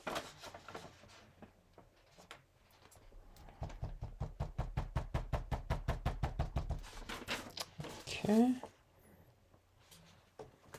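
A sheet of paper rustling as it is laid over the card, then a fast, even run of light taps on the paper-covered desk, about nine a second for some three seconds, followed by a short rising hum.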